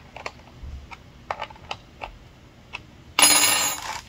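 A few light scattered clicks, then near the end a loud half-second metallic rattle: the saw chain of an Echo DCS-2500T electric chainsaw pulled by hand along its guide bar to check the tension after the adjustment was backed off a quarter turn.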